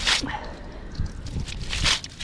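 Water splattering onto wooden dock boards from an oyster cage full of live oysters, in two short splashes, one at the start and one near the end, with low handling thumps between them.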